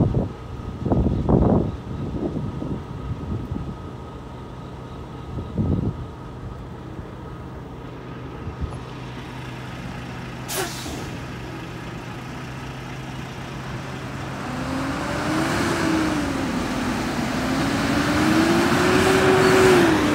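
Semi trucks' diesel engines idling at a railroad crossing, with a sharp air-brake hiss about halfway through. A tractor-trailer then pulls away across the tracks, its engine note rising, dropping and rising again as it accelerates through the gears, growing louder near the end.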